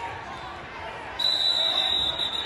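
A referee's whistle blown in one long, steady blast starting about a second in, over crowd chatter: it stops the youth wrestling bout, most likely calling the pin.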